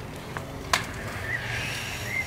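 Hand hedge shears snipping a thuja hedge: a light click, then a sharper snip under a second in, over a low steady background. Faint short high chirps follow in the second half.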